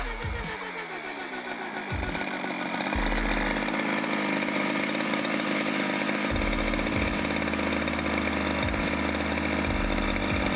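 Two-stroke petrol engine of a 1/5-scale Technokit Junior RC car winding down as the throttle is released over the first couple of seconds, then idling steadily.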